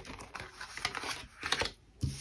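Tarot cards being handled on a table: a few light, uneven ticks and taps.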